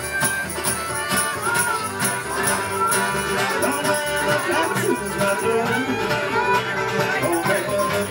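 Live acoustic string band playing a bluegrass-style tune, with fiddle melody over acoustic guitar and upright bass.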